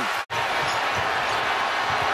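A basketball being dribbled on a hardwood court, repeated low thumps over steady arena crowd noise. The sound drops out for an instant about a quarter second in.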